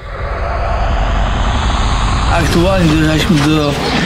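Loud, steady outdoor rumbling noise, heaviest in the low end, like wind on the microphone or passing traffic. A man's voice comes in about two and a half seconds in.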